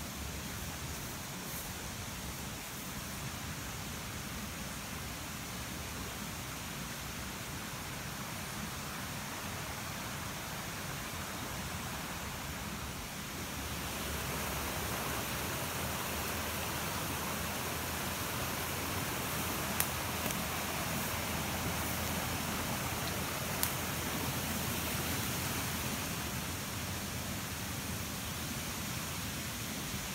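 Fast-running creek water rushing over rocks, a steady hiss that grows louder about halfway through and eases a little near the end.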